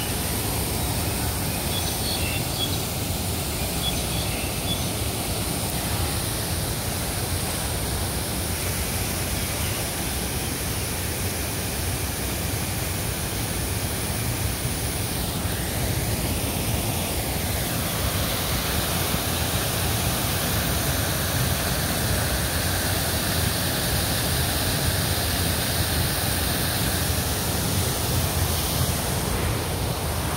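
Park fountain's water jets splashing into the basin: a steady, even rushing noise that stays at one level throughout.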